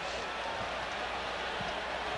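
Steady crowd noise from a packed football stadium, heard through the TV broadcast sound.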